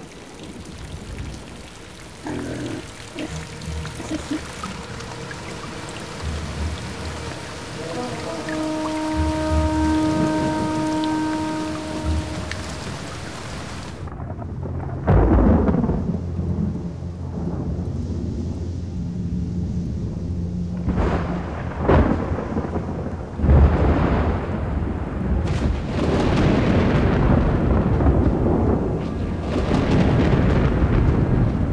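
Heavy spring thunderstorm: steady rain with deep rolling thunder. About halfway through, the hiss of the rain drops away suddenly and loud thunder claps and long rumbles take over, with the rain building up again near the end.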